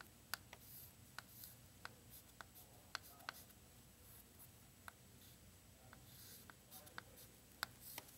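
Chalk on a chalkboard, faint: a scatter of sharp little ticks and soft scrapes as a few symbols are written.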